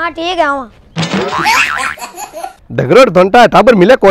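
A man laughing loudly and theatrically: a short wavering voiced laugh, a breathy wheezing stretch about a second in, then loud voiced laughter again near the end.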